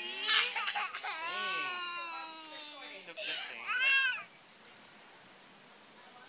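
A toddler crying in long, high, rising and falling wails while held for a haircut, stopping about four seconds in.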